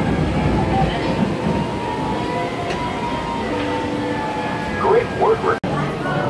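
Roller coaster train rolling past on its track, a steady rumble of wheels and cars. A few voices rise briefly near the end.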